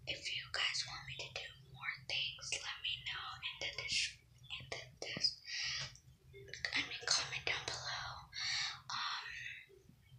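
A girl whispering in short phrases broken by brief pauses, with a faint steady low hum underneath.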